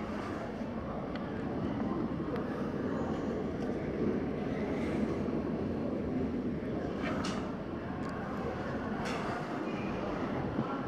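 Steady rumbling background noise of a large terminal hall, with a couple of short clicks about seven and nine seconds in.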